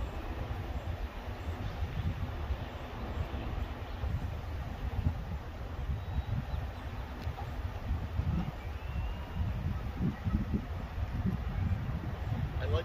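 Wind buffeting the microphone outdoors: an uneven, gusting low rumble over faint open-air background noise.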